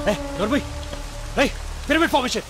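Film soundtrack: short rising-and-falling shouted calls, one near the start, one about one and a half seconds in and a pair near the end, over a held musical drone and a steady hiss.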